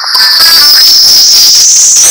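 Loud, heavily distorted electronic audio: a shrill whistling tone that sinks in pitch and then rises again, over a harsh hiss, with a faint snatch of melody in the first half.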